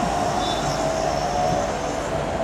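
A steady rushing mechanical noise with a faint steady whine, like a passing vehicle.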